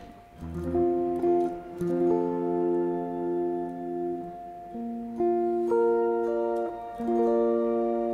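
Clean seven-string electric guitar picking triad chord inversions one note at a time, each note left ringing so the chord builds up; three chord shapes follow one another, with new groups about halfway through and near the end.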